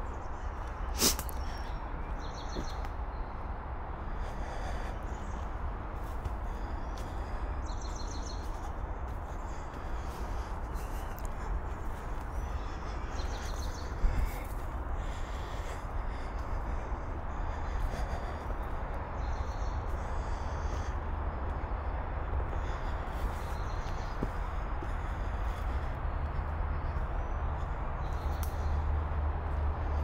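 Woodland birds give short, high calls again and again over steady outdoor noise and a low rumble from the walking, hand-held camera. A sharp click comes about a second in and a knock about halfway through.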